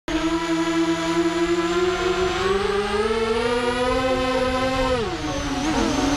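Brushless motors and propellers of an SRD250 V3 racing quadcopter heard from its onboard camera: a steady whine whose pitch climbs slowly for about four seconds, then drops sharply about five seconds in and wavers.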